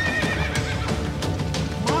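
A horse's hooves clip-clopping on a dirt lane, a steady run of irregular knocks, over background film music.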